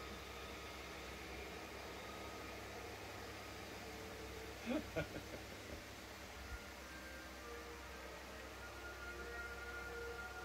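Faint, steady hiss and hum of airfield livestream audio playing through a monitor's speakers as an F-35 taxis. There is a brief voice sound about halfway through, and faint steady tones come in during the second half.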